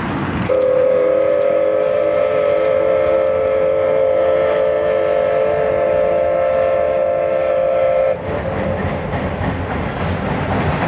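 Steam whistle of the Oigawa Railway's C11 227 tank locomotive, dressed as Thomas the Tank Engine, blown in one long steady blast of about seven and a half seconds that starts half a second in and cuts off sharply. The train's running noise crossing the steel girder bridge carries on underneath and after it.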